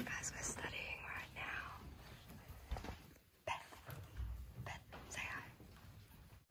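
Hushed, whispered voices of a few people, faint and broken up by short pauses.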